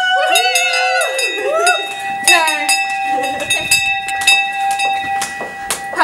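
Brass hand bell rung repeatedly by hand, with rapid clapper strikes and a ring that holds steady from about a second in.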